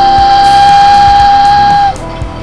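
A toy train whistle sound effect: one loud, steady high whistle tone held for about two seconds, cutting off sharply near the end, over background music.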